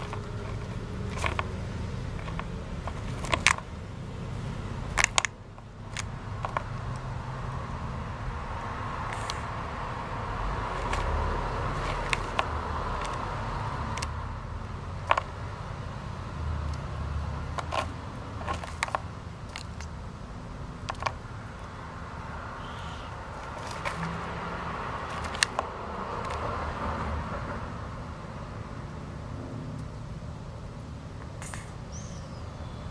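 Red-footed tortoise biting and crunching dry, unmoistened tortoise pellets: sharp, irregular clicks and cracks scattered every second or two, over a steady low rumble.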